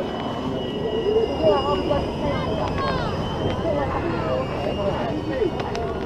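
Several people chattering indistinctly, over a steady low rumble with a thin high whine, likely from the ride's machinery.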